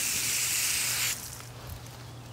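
Water spraying from a hose nozzle onto leafy plants and mulch, a steady hiss that cuts off suddenly about a second in.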